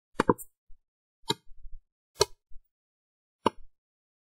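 Computer mouse clicks: a quick double click just after the start, then three single clicks about a second apart.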